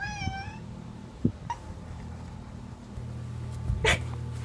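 A domestic cat meows once, a short wavering meow right at the start, over a steady low hum. A brief rustling knock comes just before the end.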